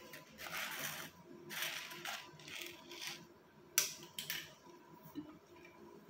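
Paper notebook being handled and its pages turned: several soft bursts of rustling, with a couple of sharp clicks about four seconds in.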